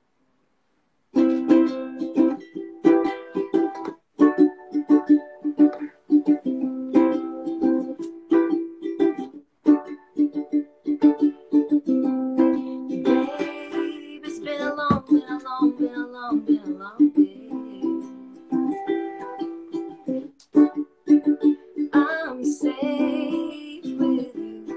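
Ukulele strummed in a steady rhythm, starting about a second in: the instrumental opening of a song.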